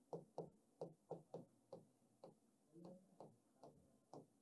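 Pen writing a word by hand on a paper sheet: a faint, uneven run of short ticks and taps as the strokes are made.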